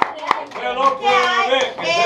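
A group clapping in time, about four claps a second, which stops about a third of a second in. Several voices follow, talking over each other.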